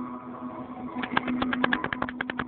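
A steady low hum with, about halfway in, a fast, even run of sharp clacks, about eight a second.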